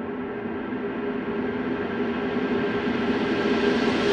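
Intro sound effect under an animated logo: a sustained, gong-like drone with several steady pitches, swelling steadily louder and brighter.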